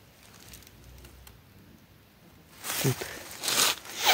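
Footsteps crunching and rustling in dry shredded corn-stalk litter: two short bursts near the end, after a low, steady background.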